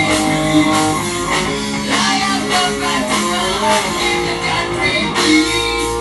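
Heavy metal band playing live in an instrumental passage: electric guitar to the fore over bass guitar and drums, without singing.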